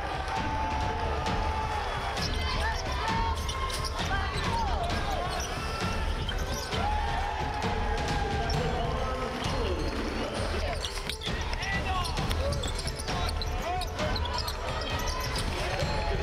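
Live basketball game sound from the court: the ball bouncing on the hardwood and sneakers squeaking in short bursts, with indistinct players' voices.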